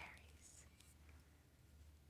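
Near silence: room tone with a steady faint low hum.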